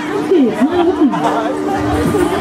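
Loud fairground ride music with a voice over it, mixed with crowd chatter.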